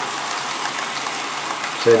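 TT-scale model train of tank wagons rolling along the track, with a steady rushing rattle of small wheels on rail.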